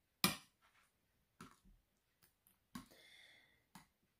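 A metal spoon clinking against a ceramic bowl while stirring a thick, creamy fruit mixture: four separate faint clicks, the first the loudest, with a brief faint ringing scrape about three seconds in.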